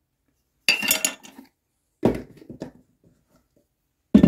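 Kitchen utensils clinking and clattering while filter coffee is being made: a bright clatter about a second in, then a duller knock about two seconds in.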